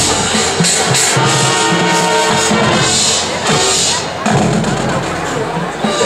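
High school marching band playing its field show: held chords over percussion, dropping back briefly about four seconds in.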